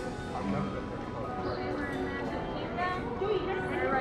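Background music mixed with the chatter of people walking on a busy street.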